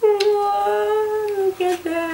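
A woman humming a tune: one long held note that sags slightly, then shorter, lower notes, with a couple of light clicks.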